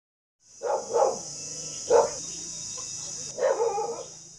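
A dog barking several times in short sharp barks, with a steady high insect chirr in the background, both starting about half a second in.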